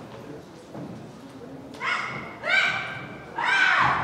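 Martial-arts demonstrators' kiai shouts: three short, sharp yells in the second half, the last two loudest, with a thump of a body landing on the floor mat.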